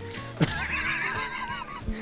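A high, quavering horse whinny about a second long, starting about half a second in, over background music.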